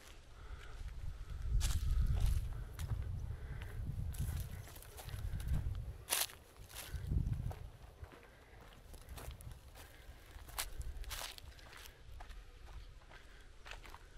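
Footsteps crunching over dry, debris-strewn ground, with scattered sharp cracks of twigs and cut branches underfoot and an uneven low rumble underneath.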